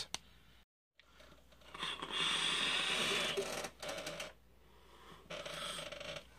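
A long draw on a sub-ohm vape atomizer: a steady hiss of air pulled through the airflow for about two seconds, then shorter, softer breathy sounds as the vapor is blown out.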